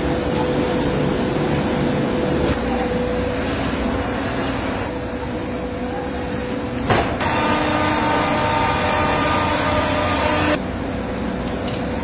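Steady industrial machinery noise in a plywood factory, with a constant hum. About seven seconds in there is a sharp click, and the sound turns brighter and hissier with several steady whining tones. About three seconds later it drops back abruptly.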